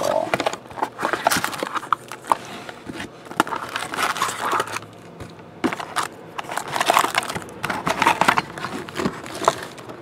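Foil trading-card packs crinkling and rustling as they are pulled by hand from a cardboard box and stacked, with irregular clicks and scrapes of cardboard.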